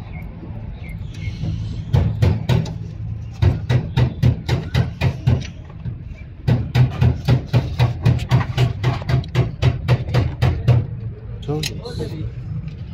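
Rapid, regular knocking in two runs of about five strokes a second, over a steady low hum.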